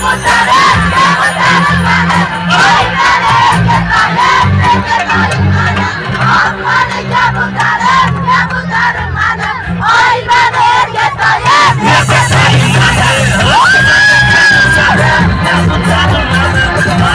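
Live band music (electric guitars, bass and keyboard) playing loud, with many voices shouting and singing along over it. One long held high note comes in near the end.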